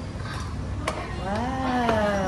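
Restaurant table sounds: a single sharp clink of cutlery or a utensil against a dish about a second in. From about halfway through, a person's drawn-out voice is heard.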